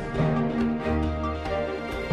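News bulletin intro theme music: sustained chords over regular percussion hits, with a deep bass note coming in about a second in.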